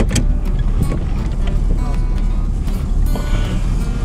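Truck engine and road noise heard from inside the cab as the truck pulls away and drives, a steady low rumble.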